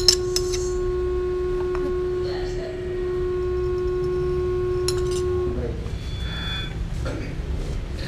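A spoon clinks a few times against a plastic food container as rice is scooped out, sharply at the start and twice more about five seconds in. A steady hum-like tone runs behind it and stops about five and a half seconds in, over a low background rumble.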